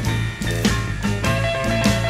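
Live electric Chicago-style blues band playing an instrumental passage: electric guitar over bass and a drum kit keeping a steady beat.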